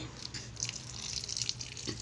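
Water poured from a plastic mug onto the soil of a potted cutting, splashing and trickling steadily as it soaks in.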